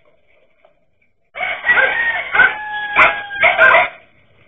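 Dogs barking hard and fast in a loud burst that starts a little over a second in, with a rooster's crow held over the middle of it.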